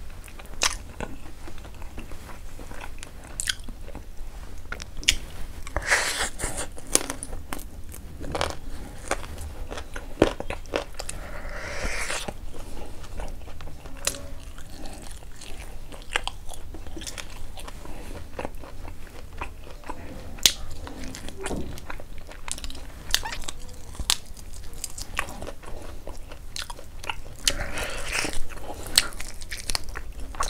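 Close-miked eating sounds: biting and chewing chicken wing meat off the bone by hand, with many irregular sharp smacks and clicks of lips and teeth and a few longer, hissier mouth sounds.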